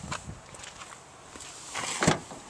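Footsteps and scuffing on gravel with handling noise, a string of irregular short steps and clicks, and a louder scuff near the end.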